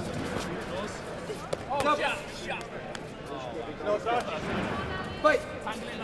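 Sports hall during a kickboxing bout: short shouted calls ring out about two and four seconds in, over scattered light knocks and hall noise. Near the end a referee shouts "Fight!", the loudest sound.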